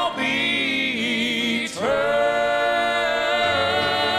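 Male gospel quartet singing in close harmony into microphones: a held chord, a short break for breath about two seconds in, then another long held chord.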